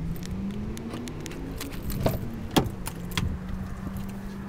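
Keys jangling and several sharp clicks as a key fob unlocks a 2008 Cadillac STS's door locks and a rear door is opened, over a steady low hum.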